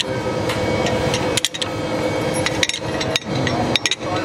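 Ratchet wrench turning the nut of a threaded screw puller on a truck cylinder head, giving about six sharp metal clicks and knocks at irregular intervals over a steady background noise.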